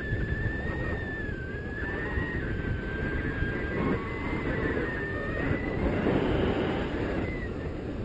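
Wind buffeting the action camera's microphone in paraglider flight: a steady low rush, with a thin high tone that wavers slightly in pitch and fades out near the end.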